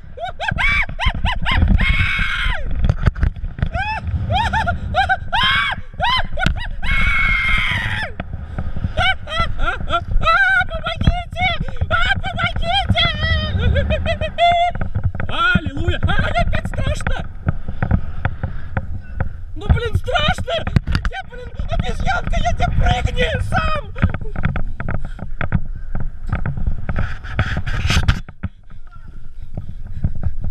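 A man screaming and yelling in fright again and again while dangling on a bungee cord. A heavy low wind rumble on a head-mounted camera's microphone runs under the voice. The voice and rumble drop away briefly near the end.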